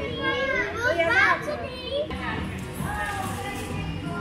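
A group of young children chattering and calling out over one another in high voices, loudest about a second in.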